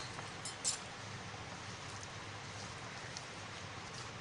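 A hand mixing and squeezing crumbly flour-and-ghee dough with water in a plastic bowl: faint rustling, with a couple of small clicks in the first second.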